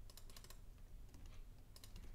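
Faint clicks of a computer keyboard and mouse. There is a quick run of four or five clicks at the start, a few more around the middle, and two near the end.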